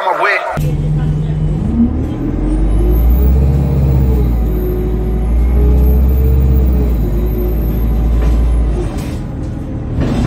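Alexander Dennis Enviro200 bus heard from inside: its diesel engine pulling hard at high revs through the Allison automatic gearbox, the engine note rising about two seconds in and holding, over a steady low drone, with a faint high whine that rises and falls. A snatch of music cuts off in the first half-second.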